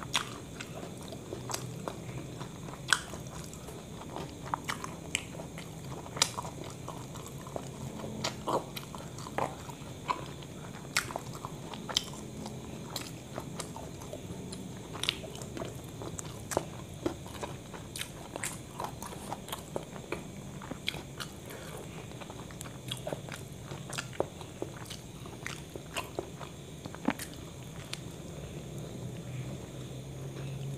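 Close-up chewing of a KFC crispy chicken burger: irregular wet mouth clicks and soft crunches, several a second and unevenly spaced. A steady low hum runs underneath.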